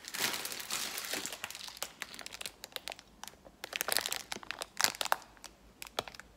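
A clear plastic bag of cakes being handled and squeezed, crinkling: a dense crackle for the first couple of seconds, then scattered crackles.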